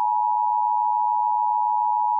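A single steady electronic beep tone held at one unchanging pitch, unbroken throughout: an edited-in transition sound effect.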